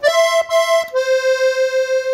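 Piano accordion playing single reedy notes: an E sounded twice in quick succession, then a step down to a C that is held steadily.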